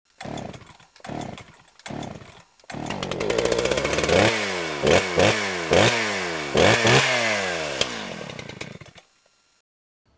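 A small gas engine sputters three times, catches and runs. It is then revved sharply about five times, each rev falling away in pitch, before it fades out near the end.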